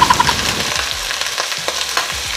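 Pork spare ribs sizzling in hot cooking oil in a stainless steel pot, just after going in. The sizzle is loudest at the start and settles to a steady frying hiss within half a second.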